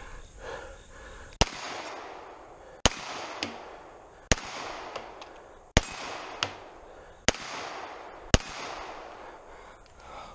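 Six shots from a Smith & Wesson M&P9 9mm pistol, about a second and a half apart, each with a long trailing echo. A fainter sharp click follows some of the shots.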